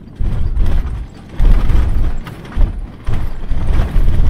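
A four-wheel drive's cabin on a corrugated dirt track: heavy low rumble coming in surges, with rattles and knocks as the vehicle shakes over the corrugations.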